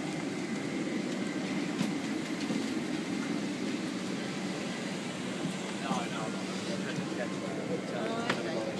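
Steady hum of an airliner cabin's air conditioning inside a parked Boeing 767 during boarding, with background chatter of passengers and a few faint clicks.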